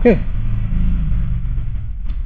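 A steady low rumble of background noise, easing slightly near the end.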